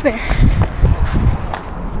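Running footsteps on a paved road, a steady rhythm of thuds, with wind rumbling on the handheld camera's microphone as the runner moves.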